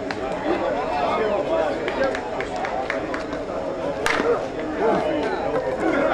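A softball bat hitting a pitched ball: one sharp crack about four seconds in, over steady background chatter and calls from players and spectators.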